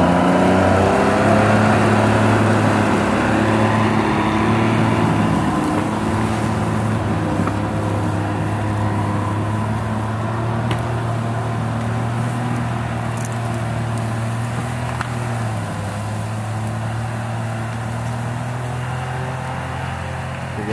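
Timberjack 225 skidder's diesel engine pulling hard under load as it drags a felled tree, at a steady pitch after revving up. Its sound slowly fades as the machine moves away.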